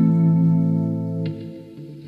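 Electric guitar through a chorus effect holding a sustained chord that fades away a little past the middle, leaving a quieter stretch at the end.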